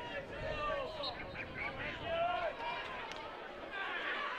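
Many voices from spectators and players calling and shouting at once, overlapping into a babble, with a short sharp click about three seconds in.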